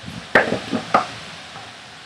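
Three short, sharp clicks in under a second, over a steady background hiss.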